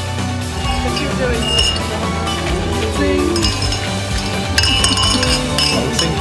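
Champagne glasses clinking together in a toast: ringing chinks about a second and a half in and a cluster of them near the end, over background music and voices.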